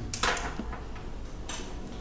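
A quiet pause between spoken phrases: faint, steady room noise with a soft click just after the start.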